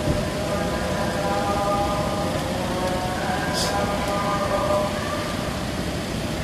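Steady low background rumble with indistinct distant voices, and a brief high hiss about three and a half seconds in.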